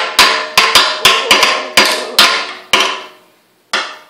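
Drums of a drum kit hit with drumsticks by a toddler: about a dozen uneven, unsteady strikes, each with a short ring, then a pause and one last hit near the end.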